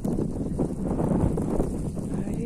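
Wind buffeting the microphone in a snowstorm: a low, uneven rumble of gusts.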